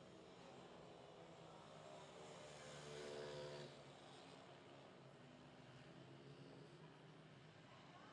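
Faint engines of small racing motorcycles running on track. The sound swells a little up to about three and a half seconds in, then drops back.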